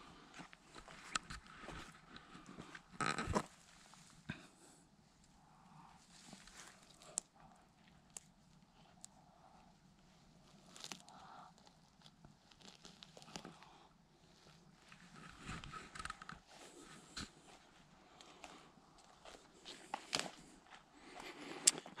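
Faint, intermittent rustling of grass and forest-floor litter as a mushroom picker steps about and a gloved hand parts the grass and picks a bolete, with a louder rustle about three seconds in.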